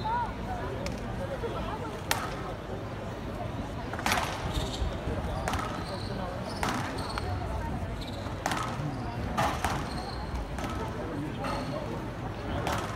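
A squash rally: the rubber ball cracking off rackets and the walls of a glass court, sharp hits coming irregularly about once a second.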